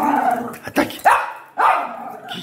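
Miniature pinscher barking excitedly, several sharp barks in quick succession, set off by a small noise it heard.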